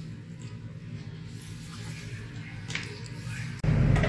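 Low background with a faint steady hum and a couple of soft clicks. About three and a half seconds in, a much louder sound with strong bass cuts in suddenly.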